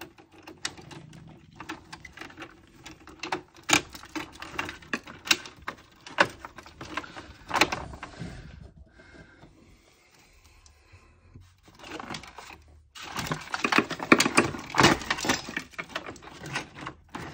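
Irregular clicks, taps and rustles of copper cable conductors and plastic breaker parts being handled in an old consumer unit as it is stripped out. There is a quieter spell in the middle and a dense run of clicks near the end.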